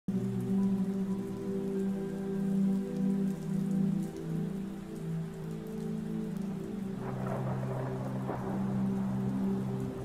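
Intro soundtrack of steady rain over a low, sustained drone of held chords. About seven seconds in, the drone thins and the rain comes up more plainly.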